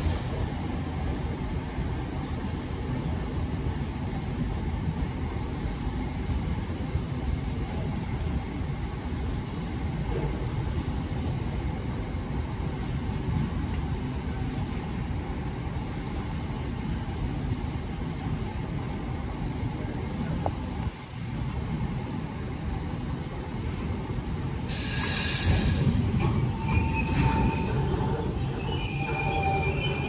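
Freight train of VTG JNA open box wagons running past close by: a steady rumble of wagon wheels on the rails. About five seconds before the end comes a short high screech, followed by steady high squealing tones from the wheels.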